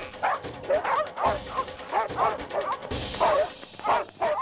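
Cartoon dogs barking over and over, short barks about three a second, over background music.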